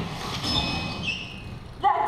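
Crash sound effect for an offstage vehicle wreck: a noisy clatter with a few brief ringing tones, strongest about half a second in and fading out.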